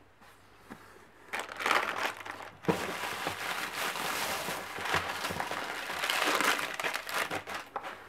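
Shredded paper packing fill rustling and crinkling as hands dig through it in a cardboard box. It is quiet for the first second or so, then the irregular crackling rustle carries on until near the end.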